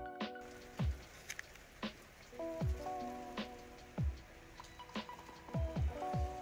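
Steady rain falling, heard from about half a second in, under electronic music with held chords and a deep, falling drum beat about once a second.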